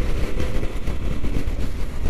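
Yamaha XT1200Z Super Ténéré's parallel-twin engine running at motorway speed, under heavy wind rush over the microphone: a steady low rumble.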